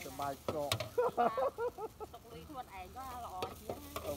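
Noodles stir-frying in a pan: a faint sizzle with stirring and a couple of sharp clicks, under voices talking.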